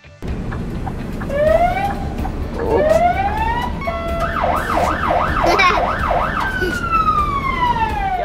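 Scania fire truck's siren sounding as it drives out: two rising whoops, then a fast warbling yelp of about three to four cycles a second, then one long falling tone as it winds down, over the low running of the truck's diesel engine.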